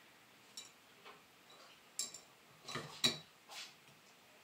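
Several faint, sharp clicks and light taps, scattered irregularly: a glass oil-lamp chimney knocking against the metal burner as it is lowered into place.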